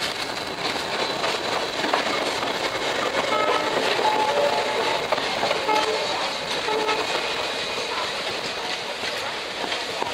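Indian Railways express passenger coaches rolling out of a station, heard from the open door: steady running noise with wheels clattering over rail joints and points, and a few faint short tones near the middle.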